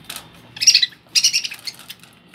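Budgerigars chirping: two loud calls, the first about half a second in and the second just after a second.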